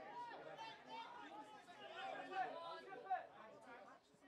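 Indistinct shouting and calling voices across a rugby pitch, too far off to make out words, with a couple of louder calls about two and a half and three seconds in.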